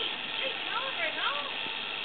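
A faint voice in the background over a steady hiss.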